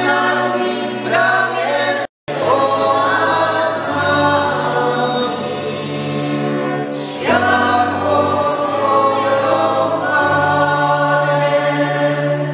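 Góral folk string band (violins and a bass) accompanying a male lead singer and a small group of voices in a slow, sustained sung melody. The sound cuts out completely for a moment about two seconds in, then resumes.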